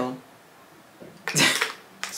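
A woman sniffing a fragrance-mist bottle held at her nose: one short, loud sniff through the nose about a second and a half in.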